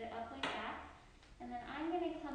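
A woman speaking, with one short knock about half a second in.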